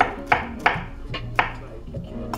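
Chef's knife chopping fresh pineapple flesh on a wooden chopping board: about five sharp knocks of the blade through the fruit onto the wood, unevenly spaced.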